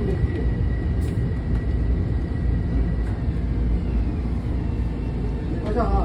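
Inside a commuter train pulling into a station: a steady low rumble of the moving train, with a thin whine that fades and a faint tone falling in pitch in the second half as the train slows.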